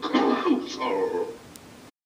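A voice making a few short vocal sounds with no recognisable words, trailing off and then cutting out abruptly just before the end.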